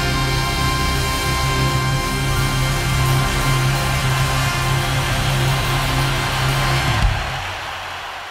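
Live rock band holding the final chord of a song, with a strong low note sustained under it. A last sharp hit comes about seven seconds in, and the chord then rings out and fades.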